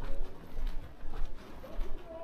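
Footsteps on a paved pavement at walking pace, about two a second, with a low wind rumble on the microphone.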